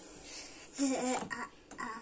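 A brief, soft vocal sound from a person about a second in, quieter than the surrounding talk.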